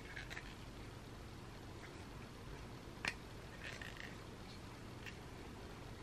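Faint clicks and handling noise from a box cutter being fiddled with by someone who can't work out how to open it, with one sharper click about three seconds in.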